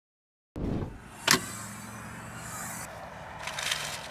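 A car's rear hatch being opened: a sharp latch click about a second in, then a low steady hum with some rustling near the end as the hatch lifts and things in the cargo area are handled.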